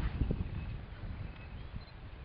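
Cheetahs feeding on a carcass: soft, irregular knocks and tearing sounds, strongest in the first half second and fading after.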